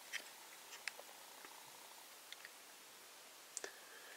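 Near silence with a few faint, scattered clicks of a small plastic toy figure being handled, its ball-jointed legs and feet moved by fingers; a quick pair of clicks comes near the end.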